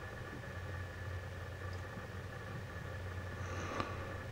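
A steady low hum with a few faint, even tones above it, unchanging throughout.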